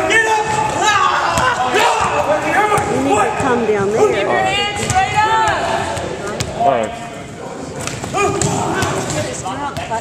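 Overlapping voices of many students talking and calling out, with volleyballs repeatedly smacking off hands, walls and the wooden gym floor in sharp, scattered thuds.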